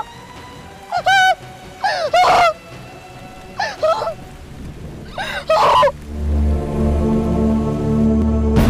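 A woman crying out in four short, wavering sobs over steady pouring rain, with a low sustained music chord swelling in about six seconds in.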